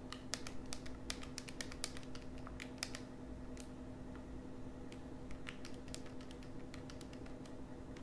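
Keys being pressed on a calculator, a quick run of clicks through the first three seconds and then scattered single presses, over a low steady hum.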